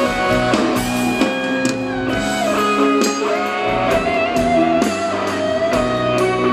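Live band music led by a guitarist's acoustic-electric guitar, with a steady beat of percussion hits.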